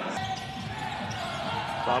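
Basketball game sound: a ball bouncing on a hardwood court over steady arena crowd noise.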